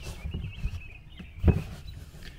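Faint rustling and handling of a rubber sunroof drain hose being pulled out from among wiring in a car's trunk, with one soft knock about one and a half seconds in.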